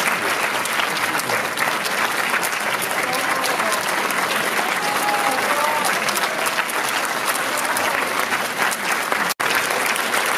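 Large audience in a cinema auditorium applauding steadily, a dense patter of many hands clapping, with a few voices calling out in the crowd partway through.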